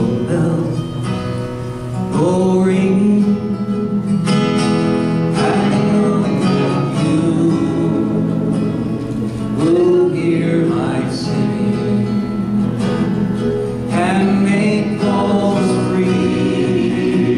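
Live acoustic folk song: acoustic guitar and banjo playing with several voices singing, the singing swelling in again every few seconds.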